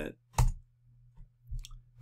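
A computer keyboard key press: one sharp click about half a second in, then a couple of faint ticks, over a faint low hum.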